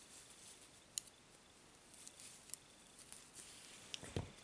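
Knitting needles clicking softly against each other twice, about a second in and again a second and a half later, over a faint rustle of wool being worked.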